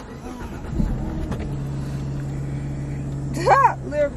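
Car engine running, heard from inside the cabin as a steady low hum that settles onto an even low tone about a second and a half in.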